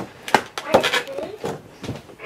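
A young child's short, excited vocal sounds, several in quick succession, mixed with a few sharp knocks from toys being handled.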